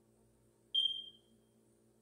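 A single short, high-pitched electronic beep about three quarters of a second in, fading away over about half a second.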